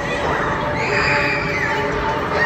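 Riders on a spinning amusement ride screaming and shouting, with one high drawn-out shriek about a second in.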